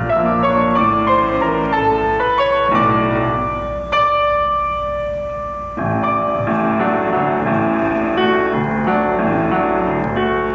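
Grand piano played four hands in a duet, many notes moving across low and high registers. About four seconds in, a chord is struck and held for nearly two seconds before the busy playing starts again.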